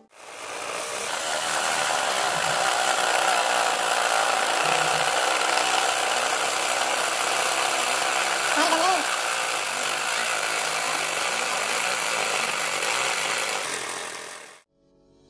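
Homemade jigsaw, a 12V DC motor driving a reciprocating jigsaw blade, running steadily while cutting through an MDF board. It fades in at the start and fades out near the end.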